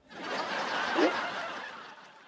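A sitcom laugh track: a burst of audience laughter that swells to a peak about a second in, then fades away.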